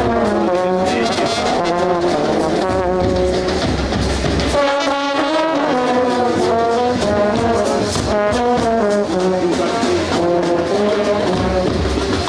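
A marching Indian brass band playing a tune together, led by silver bell-front baritone horns.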